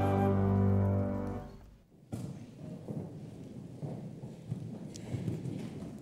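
The last held chord of a hymn, sung by a congregation with instrumental accompaniment, fades out about two seconds in. It is followed by low, irregular rustling and shuffling as people move about in the hall.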